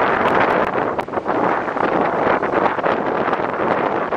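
Fast river water rushing and breaking over rocks in a steady loud roar, mixed with wind buffeting the microphone.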